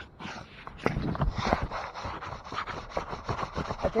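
Close scraping, rubbing and knocking of someone moving about and handling things on an RV roof, starting about a second in and running on as a dense scratchy clatter of small clicks and knocks.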